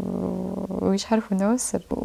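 Speech: a woman's voice holds a drawn-out, rough hesitation sound for most of the first second, then goes on talking.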